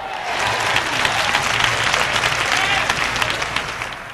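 Large crowd applauding, swelling about half a second in and fading near the end.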